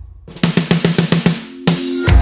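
Drum kit playing a fast fill of about ten strokes a second after a brief break in the band, ending in a cymbal-backed hit as the band comes back in about a second and a half in.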